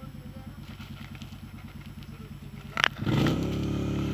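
ATV (quad bike) engine idling with an even pulse; just before three seconds in comes a sharp knock, then the engine revs up and stays loud under throttle while the quad is stuck in deep mud.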